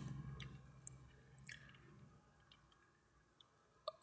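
Near silence: a low tone dies away in the first second, then a few faint computer-mouse clicks.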